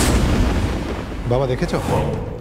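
A dramatic sound-effect hit of the kind edited onto reaction shots in TV serials: a sudden loud impact at the start that fades out over about a second. A voice then speaks over its tail.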